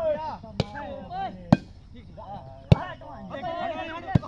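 Hands striking a plastic volleyball in play: three sharp slaps about a second apart, the last the loudest, with players shouting between them.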